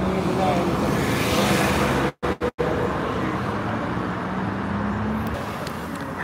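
Street traffic noise with a steady vehicle engine hum. The sound cuts out completely three times in quick succession a little over two seconds in.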